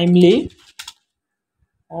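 A few quick computer keyboard keystrokes, short clicks between spoken words.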